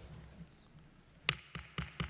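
A quick run of four sharp knocks on a hard surface, about four a second, the first the loudest, over faint room noise in a large hall.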